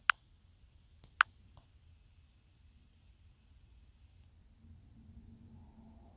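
Two sharp clicks about a second apart, the second followed shortly by a fainter one: fingertip taps on a smartphone touchscreen. Otherwise faint room tone.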